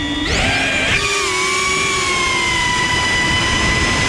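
iFlight Green Hornet 3-inch ducted cinewhoop quadcopter's brushless motors and props: a steady whine at the pad that rises sharply as the throttle comes up and it lifts off within the first second, then holds a fairly steady high whine in flight.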